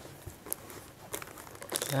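Plastic wrapping and a cardboard gift box being handled as a sarung is unpacked: a few faint crinkles and taps, then louder plastic crinkling near the end.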